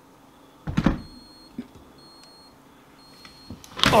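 A Klein Tools non-contact voltage tester, held against the dishwasher's turquoise wash-motor wire, gives three short high beeps about a second apart, signalling that voltage is reaching the wash motor. A thump comes just before the first beep.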